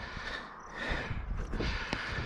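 A car approaching along the highway, its road noise faintly swelling, with a low rumble underneath.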